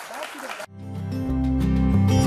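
Audience applause that cuts off abruptly less than a second in, followed by instrumental music with sustained bass-heavy notes swelling in and growing steadily louder.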